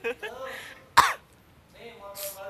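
A single sharp cough about a second in, close to the microphone and the loudest sound here, after a brief stretch of a voice.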